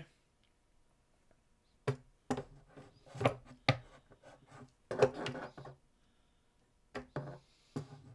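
A clamp knocking and scraping against the body of a Martin D-28 acoustic guitar as it is worked in through the soundhole and fitted onto the bridge: a series of irregular knocks and clicks.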